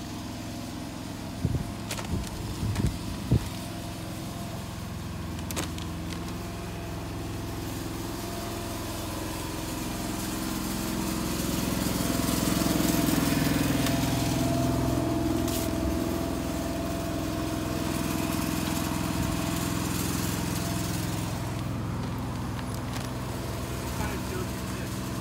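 Engine of a parked flatbed work truck idling steadily, getting louder about halfway through as it comes close.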